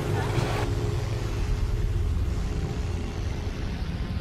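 Low rumble with a few steady droning tones: the start of a dark ambient music track. A brief burst of outdoor street noise with voices cuts off sharply less than a second in.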